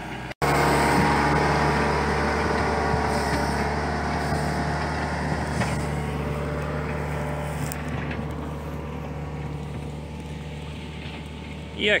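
Diesel engine of a John Deere 310L backhoe loader running steadily at constant speed. It comes in after a brief gap about half a second in and slowly grows quieter over the following seconds.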